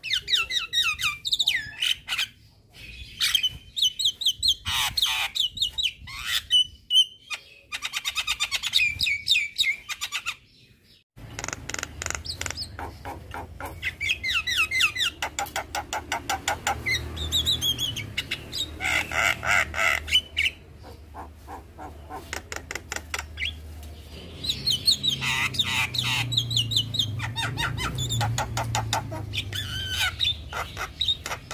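Young Javan myna singing continuously: fast chattering runs of rapid notes mixed with rasping, falling whistles, in bursts with short pauses. There is a brief break about ten seconds in.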